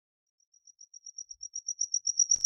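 Cricket chirping: a rapid train of high-pitched pulses, about eight a second, fading in and growing steadily louder.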